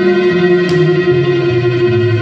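String quartet music: a high note held steadily over a low string line that steps downward in pitch.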